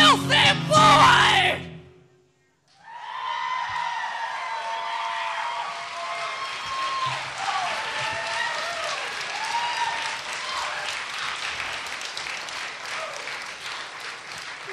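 A live band, with electric guitar, plays the last moments of a song and stops about a second and a half in. After a short silent gap, the audience applauds and cheers.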